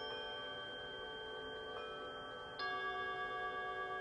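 Chimes ringing, many bell-like tones held long and steady; a fresh, louder strike joins about two and a half seconds in.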